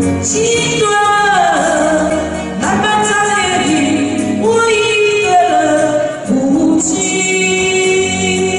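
A woman singing a sentimental Chinese-language ballad into a handheld microphone over backing music, in long sung phrases with held, wavering notes.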